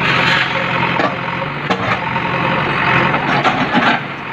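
Diesel engine of a JCB backhoe loader running steadily as its bucket breaks up concrete walls, with sharp knocks and crashes of masonry once about halfway through and several near the end.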